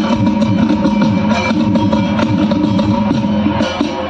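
Loud dandiya dance music played over a stage loudspeaker system, with a steady drum beat.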